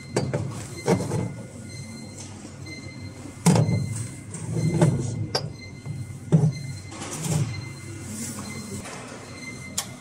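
Steel injector dismounting tools handled in an aluminium tool case: a few scattered metal knocks and scrapes as pieces are picked up and set down, the loudest about three and a half seconds in.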